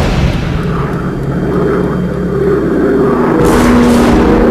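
Jet airliner engine sound effect: a steady rumble with a held whine, starting abruptly and growing a little louder in the second half.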